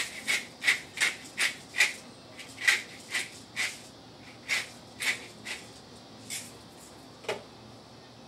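Hand pepper mill grinding black peppercorns in short twisting strokes, about three a second for the first two seconds, then slower and more spaced out. A single sharp click near the end.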